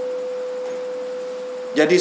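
Public-address system ringing with microphone feedback: one steady mid-pitched pure tone over a steady hiss, cutting off near the end as the voice returns.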